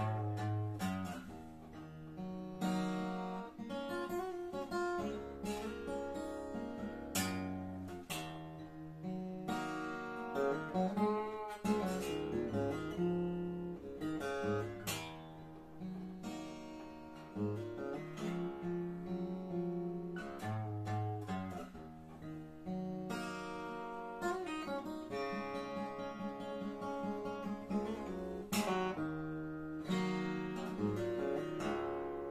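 S. Yairi YD-40 steel-string dreadnought acoustic guitar played solo, with picked melody notes over moving bass notes and occasional strummed chords that ring out.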